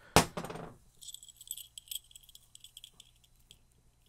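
A sharp click at the start, then faint, scattered light metallic clinking and jingling as small steel split rings are handled.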